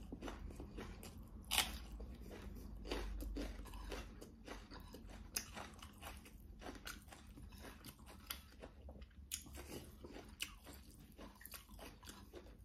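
Close-up eating sounds of a person eating rice and green chili by hand: chewing with crunchy bites and soft crackles, the sharpest bite about one and a half seconds in.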